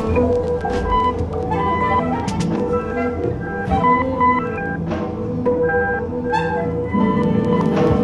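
Experimental live electronic music: short, separate pitched bleeps hopping between high and low pitches over a steady drone, with a warbling note about six seconds in and a fuller low layer coming in near the end.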